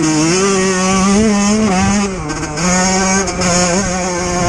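Yamaha YZ125 two-stroke dirt bike engine held at high revs under throttle, pitch fluctuating slightly; it dips briefly about two seconds in, then climbs back up.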